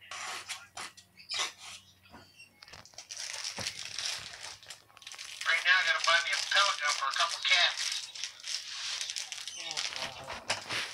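Short clicks and crinkling from a baby's hands on a cardboard box and a plastic bag, then about five seconds in a baby's high-pitched babbling that lasts a few seconds.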